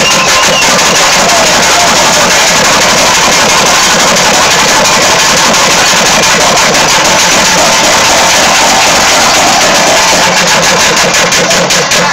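Festival drummers beating cylindrical barrel drums in a very loud, fast, continuous rhythm with no break.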